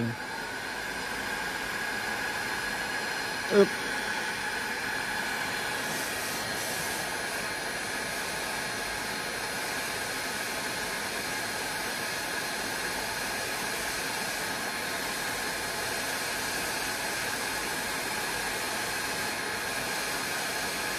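Heat gun running steadily, a constant rush of air with a faint steady whine, blowing hot air onto a thin copper strip.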